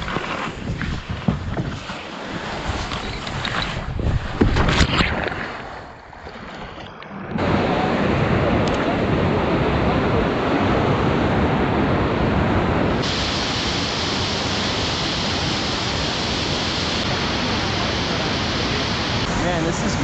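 Steady rushing of a large whitewater rapid that starts abruptly about seven seconds in, its tone shifting brighter twice at cuts. Before that come uneven rustling and wind on the microphone as a kayak is slid down a grassy bank.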